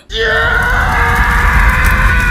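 Heavily distorted, bass-boosted scream sound effect: one long held cry over a heavy rumble, starting a moment in.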